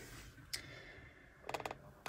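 Faint handling clicks: a single click about half a second in, then a quick run of four or five small clicks near the end.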